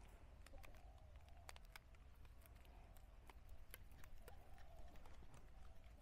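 Near silence with faint scattered clicks and crinkles from a plastic ice-pop bag being twisted and tied off by hand.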